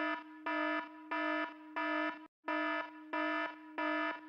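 An electronic alarm beeping about one and a half times a second over a steady underlying tone, with a brief break a little past two seconds in.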